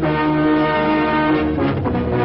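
Intro theme music with sustained brass-like chords, moving to a new chord near the end.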